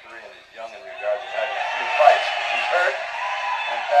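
Indistinct voices from a boxing broadcast heard through a television speaker, thin and lacking bass, swelling louder about a second in.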